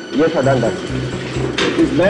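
A man's voice speaking, over a low hum that pulses on and off about twice a second.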